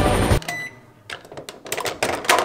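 Music cuts off abruptly, then a few short clicks as a microwave oven's keypad Stop button is pressed. The oven is stopped at one second left, before its end-of-cycle beep sounds.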